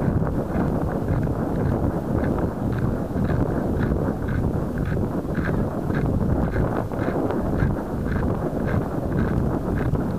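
Wind buffeting the microphone of a small onboard camera riding a model rocket as it comes down: a steady, rough rush with faint, irregular ticks through it.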